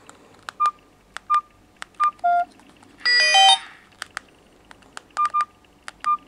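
Keypad beeps of a Fly Ezzy 5 button phone as its menu keys are pressed: short beeps of one pitch, each with a key click, one of them lower. About three seconds in, the phone plays a brief, louder jingle of several tones.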